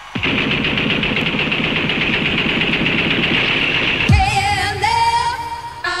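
Rapid, continuous machine-gun fire from the track's sampled intro. About four seconds in it gives way to a deep falling boom as electronic dance music starts, with a held synth note and wavering high melodic lines.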